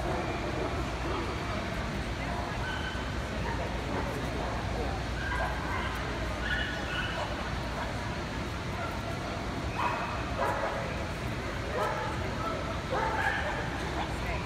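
Dogs barking and yipping in short bursts, with a louder cluster of barks in the last few seconds, over the steady chatter of a crowd.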